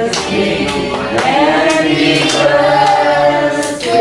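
A group of voices singing together, with hands clapping along in time, about two claps a second.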